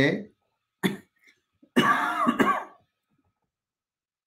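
A man's voice: a short throat-clearing cough a little under a second in, then a brief hesitant vocal sound lasting about a second.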